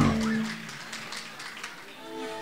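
Live band music dying away: a held note fades over about half a second, leaving a quieter lull with faint room sound until new instrument notes come in near the end.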